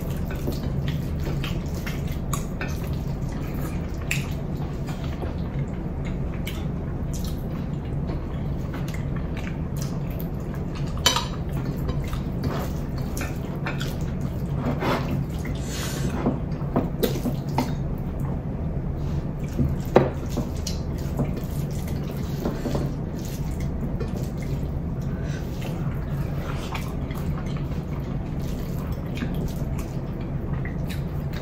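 Close-miked hand-eating sounds: fingers mixing rice and curry on plates and wet chewing, with many small clicks and squishes over a steady low hum. A few sharper taps stand out, the loudest about 20 seconds in.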